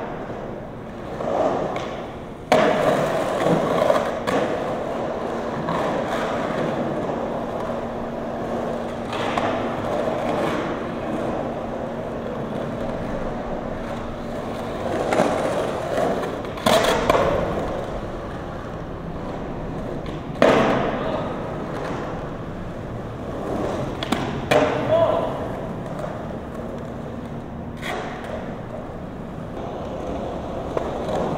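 Skateboard wheels rolling on concrete, with about half a dozen sharp clacks of the board striking the concrete at intervals.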